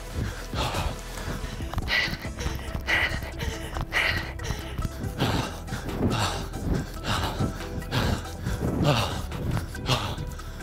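A runner breathing hard, short gasping breaths about once a second, with footfalls, over background music.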